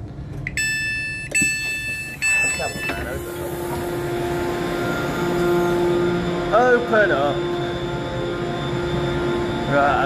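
Train passenger-door warning beeps: three steady electronic tones, one after another, in the first three seconds as the door opens after the Open button is pressed. Then a steady low hum with brief voices in the background.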